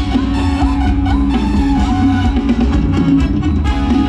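Live band playing Thai ramwong dance music, with drums, bass and electric guitar over a steady beat.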